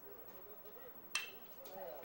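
A faint background murmur, then a little over a second in a single sharp ping of a metal college bat hitting the baseball, with a brief ringing tone.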